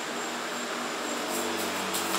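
A deck of tarot cards being shuffled by hand, with faint soft clicks in the second half, over a steady low hum.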